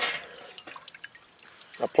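Water dripping and trickling off a cooled plate of solidified trap wax as it is lifted out of a pot of water, falling back into the water below. There is a short rush of water at the start, then scattered drips.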